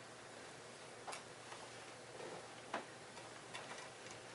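Faint, irregular light clicks and taps of small objects being handled, four or five in all with the sharpest a little before the end, over a quiet room hiss.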